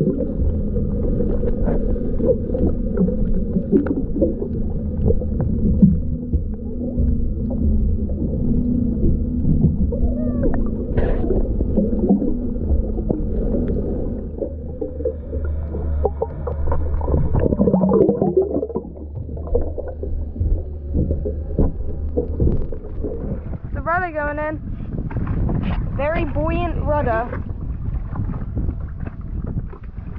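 Muffled underwater noise from a camera's waterproof housing: a dense low rumble of moving water with scattered bubbling pops. Near the end come a few short, wavering, muffled vocal sounds.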